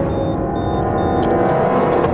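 Background film score of sustained droning tones, with a short run of high electronic beeps in the first second or so: ATM beeps as a card goes into the machine's slot.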